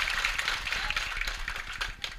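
Audience applause, many hands clapping, dying away over the two seconds.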